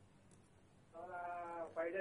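A short pause, then a man's voice holding one drawn-out hesitation vowel for under a second before he goes on speaking.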